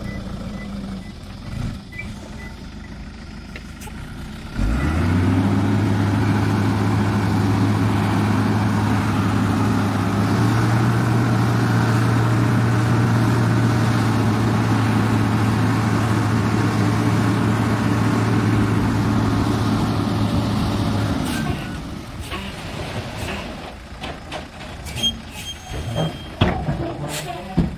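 Tipper truck's diesel engine idling, then about four and a half seconds in jumping to a loud, steady higher speed to drive the hydraulic hoist as the tray lifts and tips out a load of soil. It drops back to a low idle about five seconds before the end, with a few knocks near the end.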